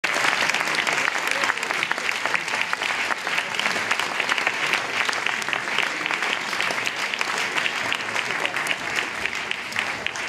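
Concert audience applauding: dense, steady clapping from many hands.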